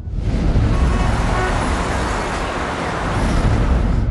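Steady city traffic noise, a dense even rumble of road traffic with a few faint short horn toots.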